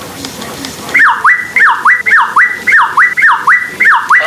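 Electronic warbling sound effect from a talking SpongeBob plush toy's speaker, starting about a second in. A high tone falls and snaps back up, repeated about three times a second like a toy siren.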